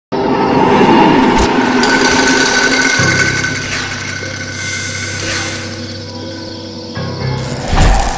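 Dramatic music and sound effects of a film trailer's production-logo intro: a dense, noisy sting that settles into a low, steady drone about three seconds in, with a deep boom just before the end.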